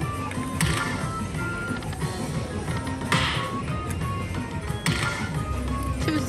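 Video slot machine's electronic game music and short chime tones during a hold-and-spin free-spins bonus. Sharp clicks land about half a second, three seconds and five seconds in.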